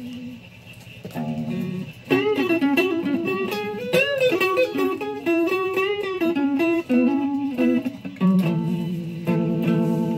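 Stratocaster-style electric guitar playing a single-note melodic lead line with string bends, the notes starting about a second in after a brief lull.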